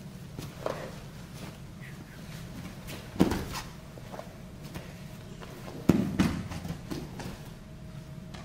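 Two grapplers in gis moving on foam mats: scuffling and cloth rustle with a sharp thump about three seconds in and another near six seconds, over a steady low room hum.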